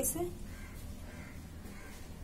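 A woman's voice finishes a word, then only a faint, steady low background hum.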